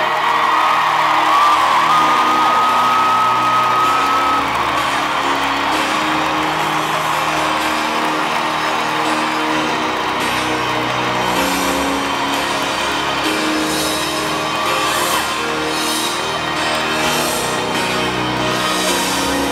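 Rock band playing live in a stadium, recorded from within the crowd, with fans whooping and yelling over the music. A long, high, steady whistle-like tone sounds over the first four seconds, then stops.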